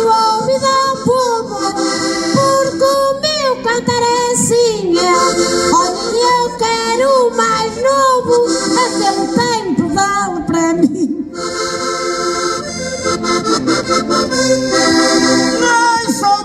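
A woman singing a Portuguese desafio verse over diatonic button accordions; her voice drops out about eleven seconds in and the accordions play on alone.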